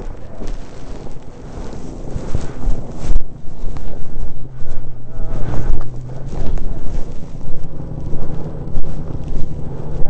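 Wind buffeting a helmet-mounted microphone. From about three seconds in, a snowmobile engine idles steadily underneath.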